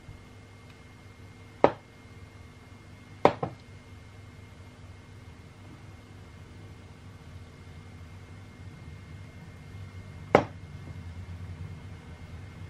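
A silicone spatula knocking against hard soap-making gear: one sharp tap, a quick double tap soon after, and another much later, over a low steady hum.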